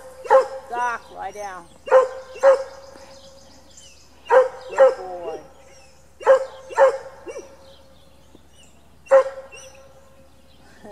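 A dog barking repeatedly, about eight sharp barks mostly in pairs a couple of seconds apart, with a short run of whining yips about a second in.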